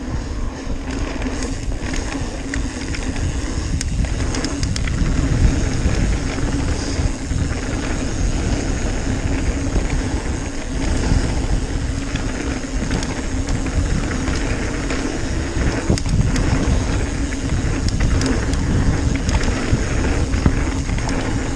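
Mountain bike rolling fast down a dirt trail: a steady low rumble of tyres on packed dirt and wind on the microphone, with scattered clicks and rattles from the bike.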